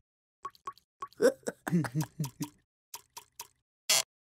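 Cartoon plopping sound effects: a few short watery pops, then a cartoon character's giggling in a run of falling chuckles in the middle, more pops, and a louder sharp pop near the end.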